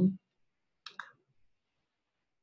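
Two quick, faint clicks about a second in, from the computer that advances the presentation slide. Otherwise the audio is near silence.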